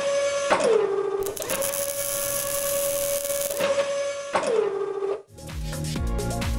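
Designed robot-arm servo sound effect: a steady electric whine that twice drops in pitch and settles lower, with a hissing, whirring machine noise in the middle. It cuts off suddenly about five seconds in.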